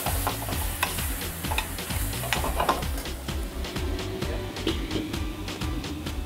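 Diced vegetables (asparagus, celery, leek, spinach and potato) sautéing in butter in a steel pan, sizzling with scrapes and clicks of stirring, under background music. The sizzle is strongest in the first couple of seconds.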